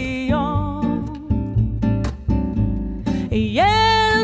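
Live music: a woman's voice singing a French chanson over plucked acoustic guitar. Near the end her voice slides up into a long held note.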